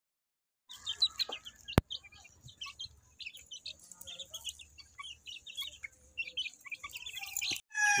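A flock of month-old gamefowl chicks peeping and chirping, many short high calls overlapping, starting under a second in. A single sharp click comes about two seconds in.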